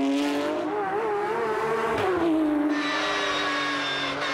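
Porsche 911 GT3 Cup race car's flat-six engine at racing revs through a corner. Its note wavers up and down, then drops sharply about two seconds in and runs on at a steady pitch.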